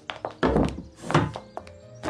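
Cartoon foley: two dull thunks, about half a second and just over a second in, among lighter taps like footsteps on a hard floor, over background music.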